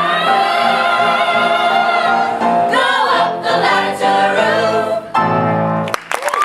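Mixed-voice ensemble singing a musical theatre number with piano accompaniment: a long held chord, then several shorter moving notes, ending on a final held chord near the end that breaks off.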